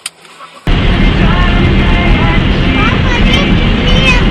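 Loud, steady road and engine noise inside a moving car, picked up by a dashcam, starting suddenly under a second in after near quiet.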